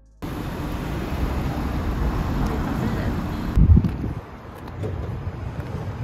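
Outdoor traffic noise with wind on the microphone. About three and a half seconds in, the sound changes abruptly and a loud low thump is heard, followed by quieter steady street noise.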